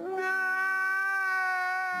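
A man crying out in one long, high wail, held on a single pitch and slowly fading.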